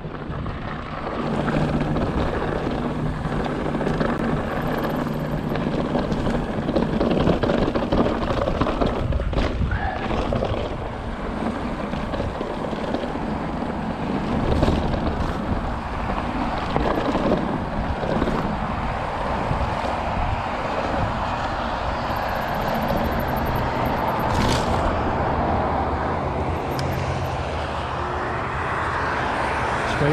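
Fezzari La Sal Peak mountain bike ridden down a rough dirt trail: a steady rush of wind on the handlebar camera's microphone mixed with tyre and frame rattle, and a few sharper knocks over bumps.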